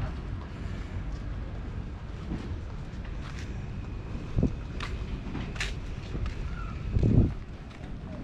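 Wind buffeting the camera microphone, a steady low rumble with two stronger gusts, about four and a half seconds in and around seven seconds in, the second the loudest. A few faint sharp clicks come through in the middle.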